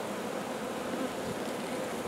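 A freshly captured honeybee swarm buzzing in a steady hum around its new hive box, with bees still in the air and unsettled.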